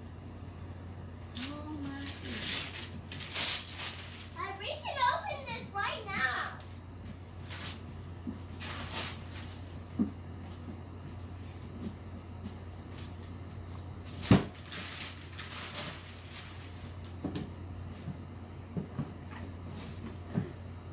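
Gift-wrapping paper rustling and tearing in scattered bursts as a toddler unwraps a boxed present. A brief high-pitched voice comes about five seconds in, and a single sharp knock about fourteen seconds in, over a steady low hum.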